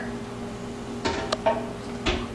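Quiet kitchen handling sounds: a couple of light clicks and a knock as vanilla ice cream is tipped from its container into a blender jar, over a low steady hum.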